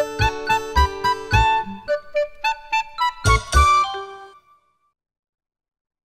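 A short, bright children's music jingle: tuneful notes over a steady bass beat. It stops suddenly about four seconds in.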